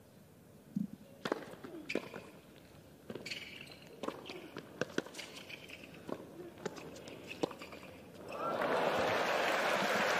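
Tennis balls struck by racquets in a rally, about eight sharp hits a second or so apart, some with a player's short grunt. About eight seconds in, stadium crowd applause and cheering swells up when the point ends and becomes the loudest sound.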